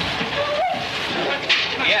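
Pool water churning and splashing as a killer whale thrashes with a trainer in its grip, with faint voices mixed in.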